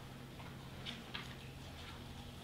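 Quiet room tone with a steady low electrical hum, and two faint short ticks about a second in.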